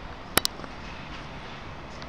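Steady low outdoor city noise from street level, with two sharp clicks close together about half a second in.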